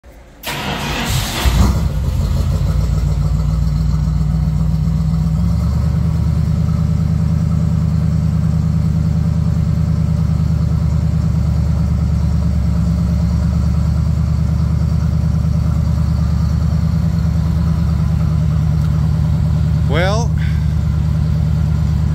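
Bombardier snow coach's fuel-injected engine (Holley Sniper EFI) starting about half a second in, catching within about a second and then idling steadily and loud. Its idle note settles about five seconds in, and it keeps running without sputtering out.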